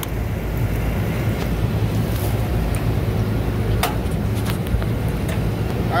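Steady low hum of a walk-in freezer's rooftop condensing unit with only its condenser fan motor running and the compressor off; the fan is turning slower than it should. A few light clicks.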